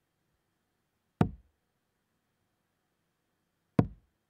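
Two steel-tip darts striking a Winmau bristle dartboard, one about a second in and another near the end, each a short sharp thud.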